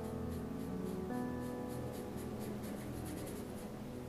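A paintbrush loaded with oil paint scratching across paper in short repeated strokes, a few per second and quicker near the end, over soft background piano music.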